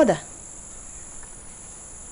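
Steady high-pitched chirring of crickets in the background, unbroken through a pause in the talk.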